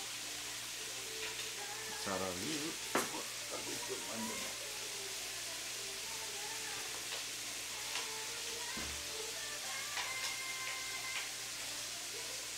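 Pork belly sizzling steadily as it cooks in a pan, with a brief faint voice in the background about two seconds in.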